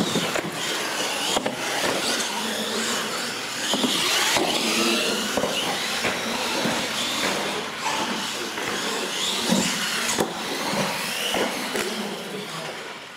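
Radio-controlled monster trucks racing on a concrete floor: a busy mix of motor and gear whine that rises and falls in pitch, with the scrub and knocking of big rubber tyres and chassis over the track. It starts abruptly.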